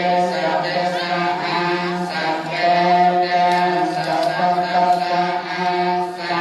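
Buddhist chanting: voices chanting together on a low, steady held pitch, the lines slowly shifting over a constant drone.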